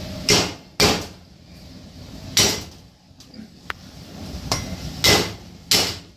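A cleaver's flat blade whacking down on ginger root on a wooden chopping board to crush it. There are five sharp strikes: two close together at the start, one about two and a half seconds in, and two near the end.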